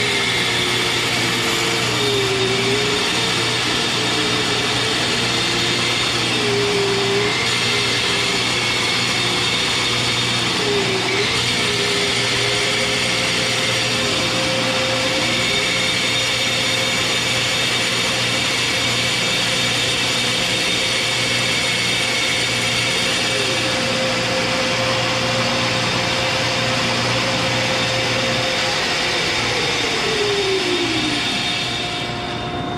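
Shopsmith bandsaw running while cutting a circle in a wood round that is turned on a circle-cutting fixture's pivot pin. The motor's pitch dips briefly several times in the first half as the blade takes the wood, then holds steady. Near the end it falls as the saw winds down.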